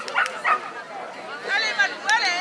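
Dog barking: a few short sharp barks in the first half second, during an agility run.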